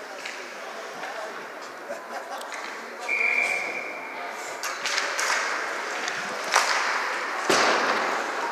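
Ice hockey play in an echoing indoor rink: a short steady whistle about three seconds in, then from the faceoff on, sticks clacking, skates scraping, and sharp bangs of puck and bodies against the boards, the loudest near the end, over the chatter of spectators.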